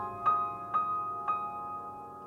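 Solo piano in a song's instrumental passage: three notes struck about half a second apart over a held chord, ringing and slowly fading.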